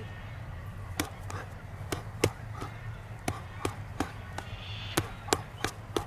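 Boxing gloves landing punches in a partner drill: a string of about nine sharp slaps at irregular intervals, some coming in quick pairs.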